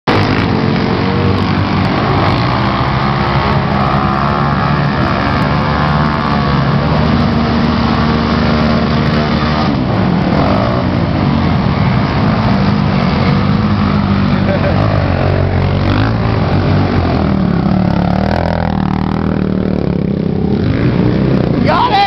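Several racing quad (ATV) engines running hard through a hairpin turn, their overlapping pitches rising and falling as the riders throttle off and back on.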